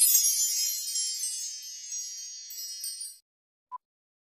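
A bright, shimmering chime sound effect, like wind chimes, struck at the start and fading out over about three seconds. Near the end comes a short, faint beep from a film-countdown leader.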